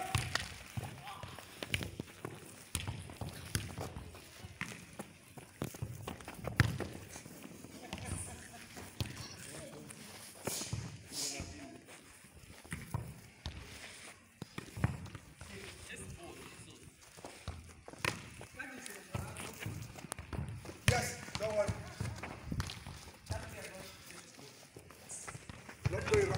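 A football being kicked and headed on a grass pitch: irregular dull thuds at uneven intervals, with running footsteps and voices in the background.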